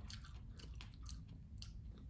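Faint chewing of a crisp fresh strawberry: a run of soft, wet crunches.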